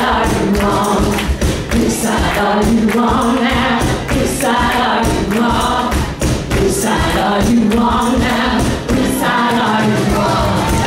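Live band music: women's voices singing together over acoustic guitar and drums.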